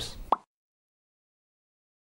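The tail of a man's spoken word and a brief pop, then dead digital silence for the rest.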